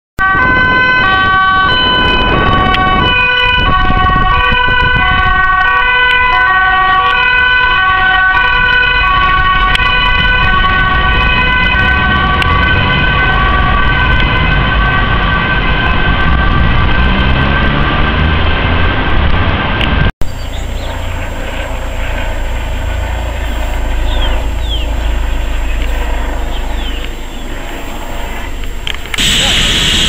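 Dutch police car's two-tone siren, switching back and forth between two pitches. It stops suddenly about 20 seconds in, and a quieter steady low rumble follows.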